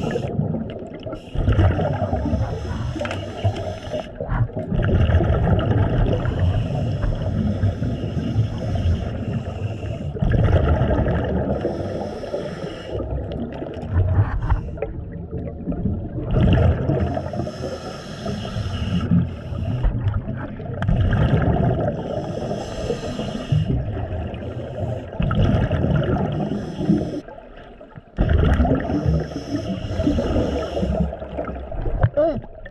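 Scuba breathing heard underwater through a regulator: bubbling, gurgling exhaust rumbles that swell and fade in turn every few seconds.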